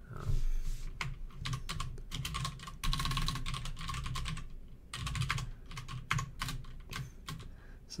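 Typing on a computer keyboard: clusters of quick keystrokes with short pauses between them as a command is typed.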